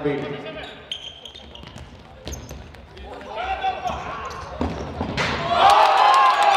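A futsal ball being kicked and bouncing on a sports-hall floor, with players calling out. About five seconds in, loud shouts and cheering break out as a goal is scored.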